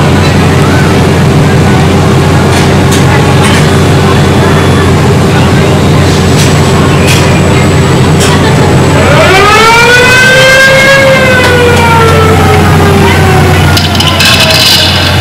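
Roller coaster ride machinery: a steady low hum with occasional sharp clanks while the train waits in the station. About nine seconds in, a whine rises in pitch and then slowly falls as the train is driven out of the station.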